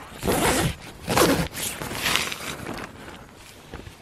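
Vango Hurricane 200 tent's vestibule door zip being pulled open in three rasping strokes, with the tent fabric rustling.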